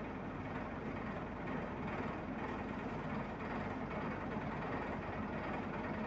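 Steady background noise: a low hum with an even hiss over it, unchanging throughout and with no distinct strokes or clicks.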